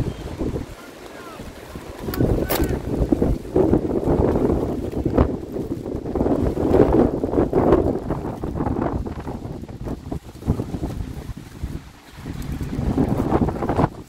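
Wind buffeting a phone's microphone in gusts: a rough rumble that swells about two seconds in, eases off after about nine seconds and surges again near the end, with one sharp click about two and a half seconds in.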